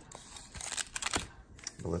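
Sealed trading-card pack wrappers handled in the hands, with short crinkles and clicks clustered around the middle.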